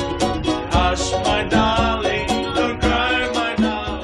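Live acoustic island music: ukuleles strummed in a quick, steady rhythm over a djembe hand drum, with a man singing.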